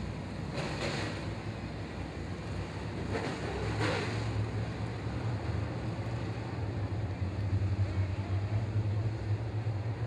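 A pack of dirt late model race cars' V8 engines running at low throttle as the field rolls in formation. They make a steady low drone that grows louder about three seconds in. Two brief rushes of noise come in the first four seconds.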